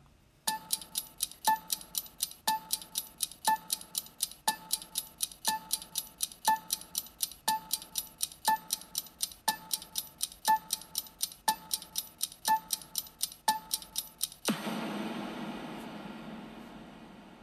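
Quiz thinking-time sound effect: fast clock-like ticking, about four ticks a second, with a short beep on every second for about fourteen seconds. Near the end a longer time-up sound comes in and fades out.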